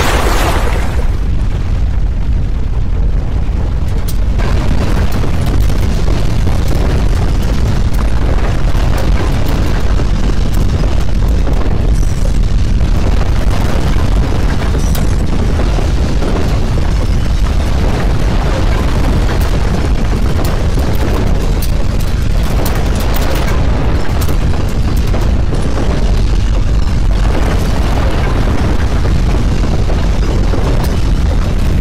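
Loud, steady deep rumble of a simulated earthquake's shaking, keeping an even level throughout.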